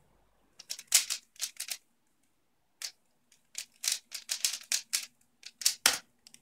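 A 3x3 speed cube being turned fast by hand: quick runs of plastic clicks and clacks from the turning layers, with a pause of over a second in the middle. A heavier knock near the end, as the solve finishes.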